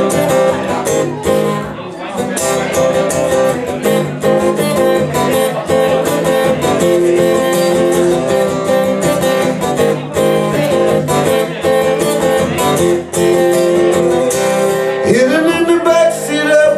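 Live rock band playing a song's instrumental opening: strummed acoustic guitar, electric guitars and drum kit. A voice starts singing near the end.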